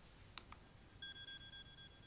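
Mobile phone ringing faintly: a steady electronic beep tone starts about a second in and holds, after a brief click.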